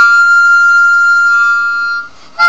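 Nickel-plated diatonic harmonica in C holding one long, high, steady note, with a softer, lower note joining about two-thirds of the way in.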